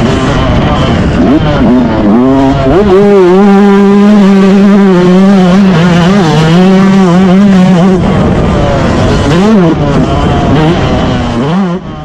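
Motocross bike engine heard from the rider's onboard camera, held at high revs on the throttle with its pitch dropping and rising again several times as the rider shuts off and picks the throttle back up, over a rough low rush. It fades out at the very end.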